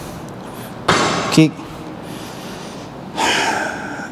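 Steel frame rail of an Eleiko Prestera SVR insert lifting platform kicked into place once, about a second in: a sudden hit with a short rush of noise after it, and a man's one-word call. A hard breath comes near the end.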